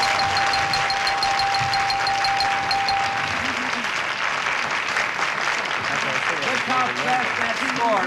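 Studio audience applauding after a correct answer, with a steady electronic tone held under the applause for about the first three seconds.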